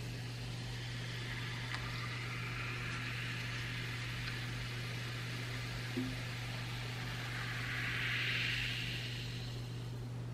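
Cola being poured over ice into a glass mug and fizzing, a steady carbonation hiss that swells near the end, with one light knock about six seconds in.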